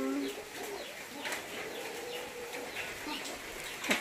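Faint low bird cooing over a steady background hiss, after a voice trails off at the very start.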